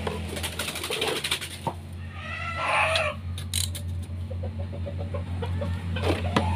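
A chicken calling once, about a second long, a little past two seconds in, over a steady low hum and a few scattered clicks.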